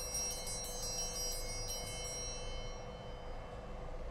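Altar bells ringing for the consecration of the host, a high metallic ringing of several tones that fades out about two and a half seconds in.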